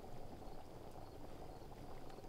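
Faint background ambience: a low steady hiss with a thin, steady high tone running through it, and a couple of faint ticks.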